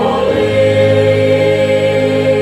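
Youth choir of mixed teenage voices singing in harmony, moving to a new chord just after the start and then holding it.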